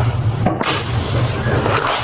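Body-camera audio cutting in suddenly: rustling and knocking of items being handled at a table, over a steady low rumble from the camera microphone.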